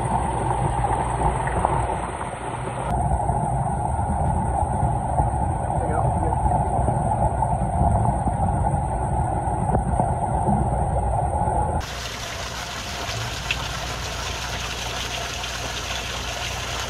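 Underwater sound in a koi pond with an airlift circulator running: a steady, muffled rush and rumble of water and rising air bubbles. About twelve seconds in it changes to a brighter, steady hiss of splashing water above the surface.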